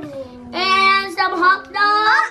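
A child singing in short held notes that slide up and down in pitch.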